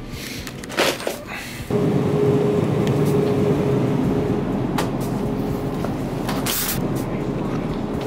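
Wire shopping cart rolling across a store floor: a steady rattling rumble that starts suddenly about two seconds in and keeps going, after a few short clicks of handling.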